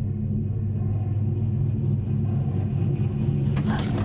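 A low, steady rumbling drone that slowly grows louder, with a sudden noisy sound near the end.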